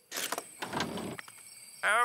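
Cartoon sound effect of a door opening: a short noisy sound at the start that trails off over about a second. A voice starts near the end.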